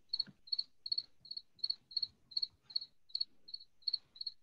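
Cricket chirping, high-pitched, about three chirps a second in a steady rhythm.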